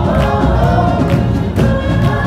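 Live worship band: several singers singing together at full voice over a band with a heavy, steady bass, singing an "oh, oh oh oh" refrain.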